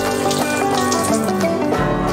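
Background music: a steady instrumental piece with changing notes.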